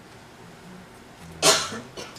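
A single short, loud vocal burst from a person, like a cough, about one and a half seconds in, over a faint low hum.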